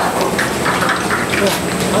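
People talking in Chinese over the steady running hum of a roller heat transfer machine.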